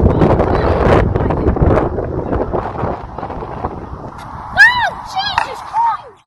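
Wheels rolling and clattering on concrete at a skatepark, with sharp knocks and wind on the microphone. Near the end come several short pitched calls that rise and fall.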